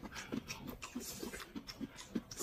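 Soft, wet mouth noises of eating: chewing and lip-smacking on hot pot food, a quick irregular run of small clicks.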